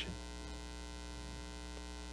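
Faint steady electrical mains hum with a thin buzz above it.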